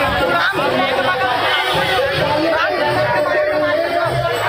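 A large crowd of many voices shouting and chattering at once, with a steady held tone running underneath.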